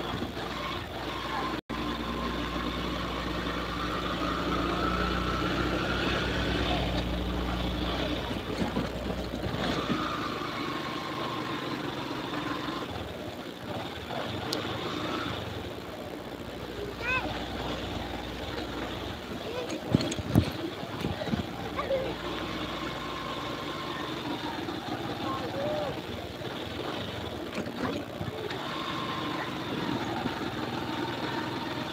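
Motorcycle engine running while riding along a dirt road, its whine rising and then falling with the throttle. A couple of sharp knocks come about twenty seconds in.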